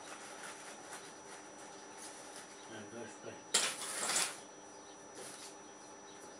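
Rummaging among cables and small belongings: a few faint knocks, then a loud clatter about three and a half seconds in that lasts under a second.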